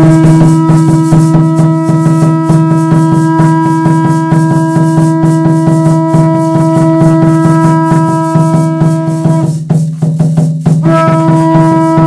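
Ceremonial music of rapidly beaten hand frame drums and rattles, over a steady low drone. A long steady held note rides on top, breaking off for about a second near ten seconds in and then starting again.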